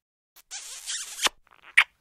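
Kissing sound effect: smooching smacks, a longer airy kiss ending in a lip pop a little past halfway, then a quick second smack near the end.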